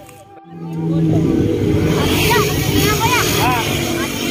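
Street traffic: a vehicle engine running steadily and loudly from about a second in, after a brief dip. From about two seconds in, short high calls that rise and fall are heard over the traffic noise.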